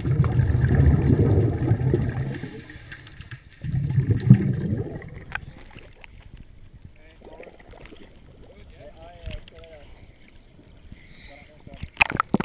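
Water burbling and sloshing around the underwater camera housing at the surface, loud for the first couple of seconds and again briefly about four seconds in. After that it is quieter above the water, with faint voices.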